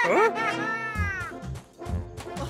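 A long, whiny meow-like cry that rises, then slides down in pitch, over background music with a beat coming in about halfway.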